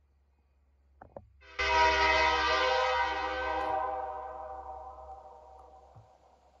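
Locomotive air horn on a CN SD75I sounding one long blast for the grade crossing, starting about a second and a half in and fading away over the next few seconds.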